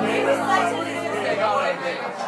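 A band's last guitar chord ringing on and stopping about a second and a half in, under indistinct crowd chatter.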